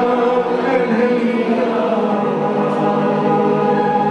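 Hindu devotional bhajan music performed live: a group of voices chanting together in long, steady held notes.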